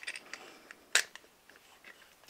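A sharp metallic click about a second in, with a few fainter ticks around it, as a flathead screwdriver and a metal watercolour palette tray are handled against each other.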